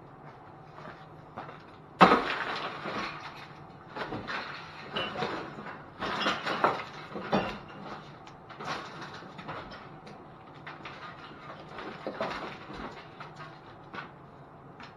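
Irregular clattering, knocks and scrapes of objects being handled and pulled out through a minivan's broken rear hatch window. It starts with a sharp bang about two seconds in.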